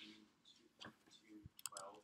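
Near silence with faint murmured voices, and a couple of quick soft computer-mouse clicks near the end.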